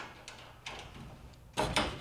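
Small metal clicks as a brass compression nut on a saddle tapping valve is loosened by hand and the copper water line is worked free of the valve outlet. A louder pair of sharp clicks comes near the end.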